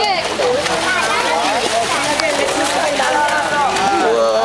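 Several young children's voices chattering and calling over each other, with water splashing and sloshing in a swimming pool.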